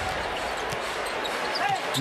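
Steady arena crowd noise, with a few faint bounces of a basketball dribbled on the hardwood court.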